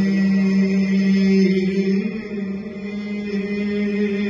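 A male voice chanting a Muharram noha, holding one long low note on a drawn-out word that steps up slightly about two seconds in.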